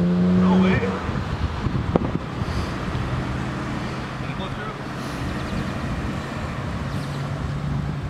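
Car engine running steadily, louder in the first second and then fainter under outdoor background noise and wind on the microphone. A single sharp click about two seconds in.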